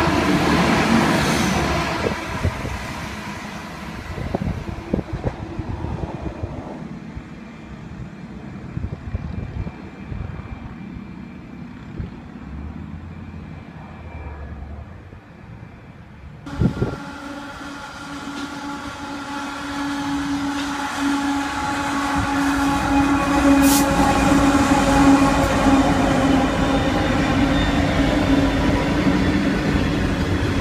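A passenger railcar train rushing past close by, then fading away. After an abrupt change comes a sharp knock, then a coal train's hopper wagons rolling past close by. Their steady rumble and hum grows louder, with a brief high wheel squeal partway through.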